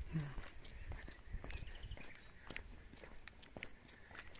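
Quiet footsteps on an asphalt road, about two to three steps a second.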